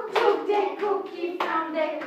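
Hand claps keeping the beat of a chanted children's rhyme, with two sharp claps, one just after the start and one past the middle, over a woman's and children's sing-song voices.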